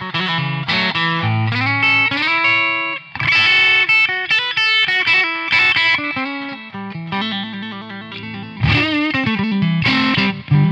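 Electric guitar (a Stratocaster) played through a Joyo Rated Boost pedal, a clean boost with a hair of overdrive, its treble turned up high. It plays a bright phrase of single-note lines with a few rising slides, then strummed chords near the end.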